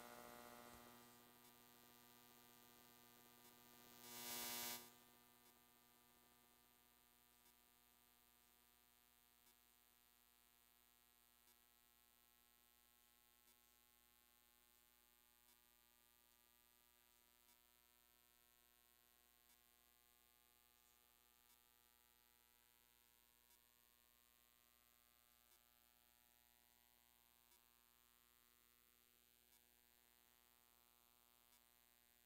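Near silence: a steady electrical mains hum, with a faint tick about every two seconds. A brief burst of noise, the loudest thing here, comes about four seconds in.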